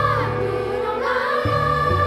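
Children's choir singing a sustained, flowing melody, accompanied by piano and strings.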